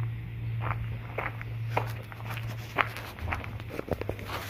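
Footsteps crunching on loose gravel, about two steps a second, over a steady low hum.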